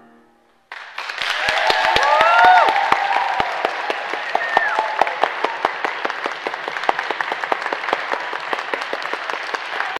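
The final piano chord fades out, then a little under a second in an audience breaks into steady applause. A few voices cheer over the clapping around two seconds in.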